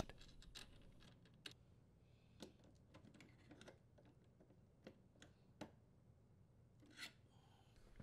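Near silence, broken by a few faint, sharp clicks and light scrapes as a power cord's strain relief and its nut are worked into a sheet-metal junction box.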